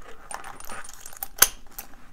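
Metal clinks and rattles as the steel end rings of an Oxford security chain knock against the shackle of the Oxford HD Lock while the lock is being closed. The clicks are scattered, with one sharp, loudest click a little after the middle.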